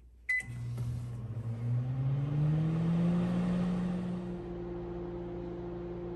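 A Panasonic microwave oven being started: a short keypad beep, then its running hum comes up, rising in pitch over the first three seconds and then holding steady.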